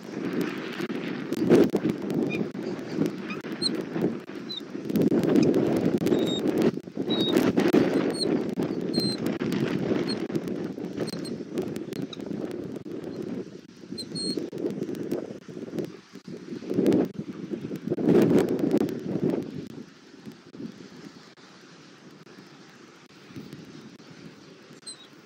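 Wind gusting on the outdoor nest-cam microphone, with rustling and light knocks from the stick nest as the adult bald eagles move about. Short, thin, high peeps from the bald eaglets come through now and then in the first half. The noise dies down after about 20 seconds.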